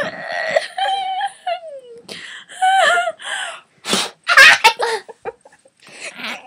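Girls laughing and squealing in high-pitched voices, in a string of short bursts.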